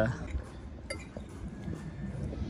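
A few faint clinks of a serrated knife against a plate as a tortilla is cut, over a low steady background hum.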